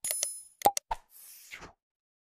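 Subscribe-button animation sound effects: a bright, high ding at the start, then several quick mouse-click sounds with a short pop among them in the first second, followed by a faint whoosh and one more click.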